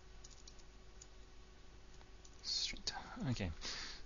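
A few faint computer keyboard key clicks during the first two seconds, then a breath and a spoken "OK" near the end.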